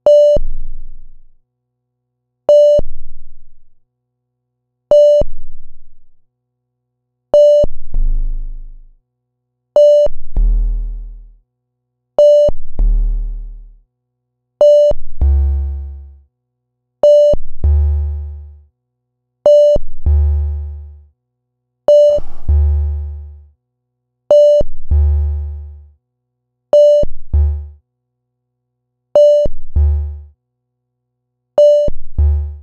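Modular synthesizer patch in Native Instruments Reaktor Blocks playing one repeating note about every two and a half seconds. Each note is a sharp pitched hit with a bright high overtone, followed by a tail that slides down in pitch. From about halfway, a heavy bass tone sounds under each note.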